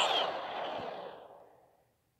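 The fading tail of a cartoon sound effect: a hissing whoosh that dies away over about a second and a half, then silence.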